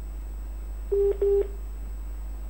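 Two short beeps of a telephone line tone about a second in, one steady low pitch, coming over the phone-in call line.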